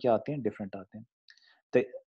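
A man lecturing in Urdu-Hindi, with a short pause in the middle before he says "to".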